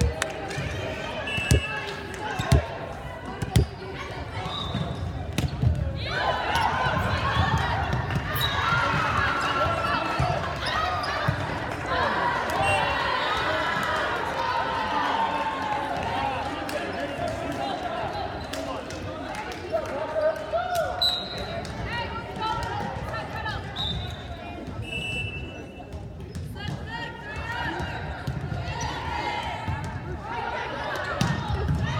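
Indoor volleyball match on a hardwood gym floor: sharp hits and bounces of the ball in the first few seconds, then many voices of players and spectators shouting and cheering together from about six seconds in, with a few brief high sneaker squeaks.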